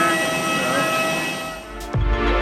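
Steady, high turbine whine of a parked jet airliner, several even tones over a rushing noise. It fades away near the end, where a cut brings in a music track.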